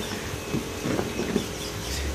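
PVC pipe fittings handled and pulled apart by hand, giving a few faint plastic clicks and rubs over a steady low background hum.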